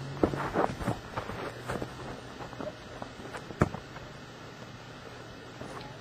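Faint outdoor sound with wind on the microphone and scattered footsteps on grass. About three and a half seconds in there is one sharp thump, a foot kicking a football off the holder's tee.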